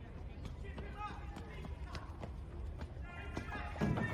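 Street sound from a phone-camera video: a low steady city background with faint distant voices and an irregular series of light taps, like footsteps on pavement.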